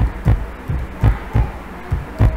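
Computer keyboard being typed on: a word keyed in letter by letter, heard as dull, low thumps at an uneven pace of about three to four a second.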